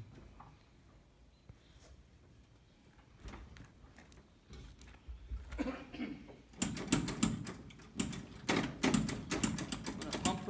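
About six and a half seconds in, the starter begins cranking the 1959 Ford Galaxie's 332 Thunderbird Special V8 in a fast, regular chatter, and the engine does not catch. It is a cold start after months of sitting.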